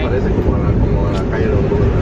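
Steady low road and engine rumble inside a moving passenger van.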